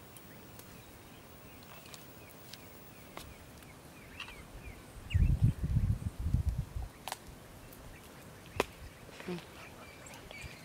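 Small birds chirping faintly and intermittently in the bush, with a few sharp clicks. The loudest sound is a burst of low muffled noise lasting about a second and a half, starting about five seconds in.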